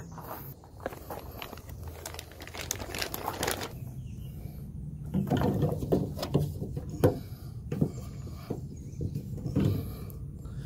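Handling noise: irregular rustling, taps and clicks as a plastic tailgate handle cover is handled at the truck's tailgate, with one sharp click about seven seconds in.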